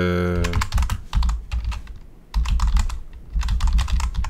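Typing on a computer keyboard: quick runs of clicking keystrokes with short pauses between them, entering a terminal command. A brief low hum at the very start.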